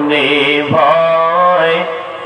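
A man singing a Bengali gozol, an Islamic devotional song, in long held notes with wavering ornaments. There is a short break in the line about three quarters of a second in, and the voice eases off near the end.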